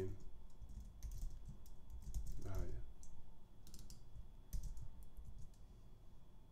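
Computer keyboard typing in short bursts of key clicks, with pauses between the bursts.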